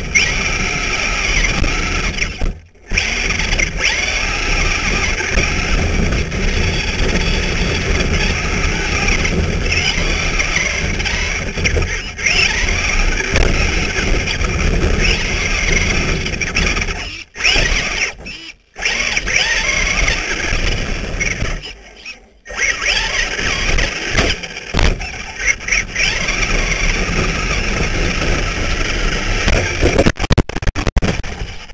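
Onboard sound of an electric Traxxas Slash RC short-course truck racing on dirt: a high motor and gear whine over tyre and chassis rumble. The sound drops out sharply a few times, about 3 seconds in, twice around the middle, and once more after that, then turns choppy near the end.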